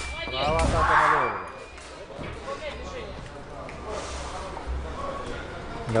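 A fencer's loud wordless shout just after a sabre touch, over the end of the electric scoring box's steady tone, which stops about half a second in. After that, low hall noise and faint voices.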